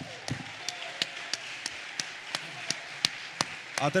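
A steady series of sharp clicks, about three a second, over the low murmur of a large hall.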